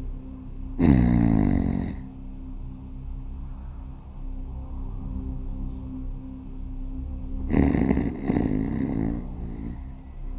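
A man snoring twice, about six seconds apart, the second snore longer, over steady background music.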